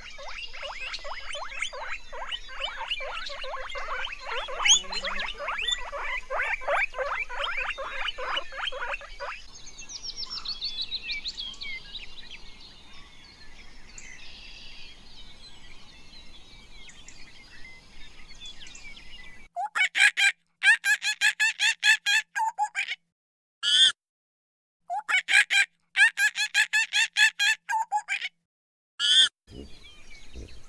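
Guinea pigs squeaking in fast runs of short calls for about nine seconds, then fainter chirps. From about twenty seconds in come loud, repeated pitched calls, broken by abrupt silences.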